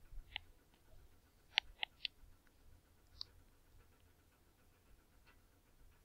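Faint, sharp clicks and taps, about five in the first three and a half seconds, from drawing on a computer whiteboard, over a low steady room hum.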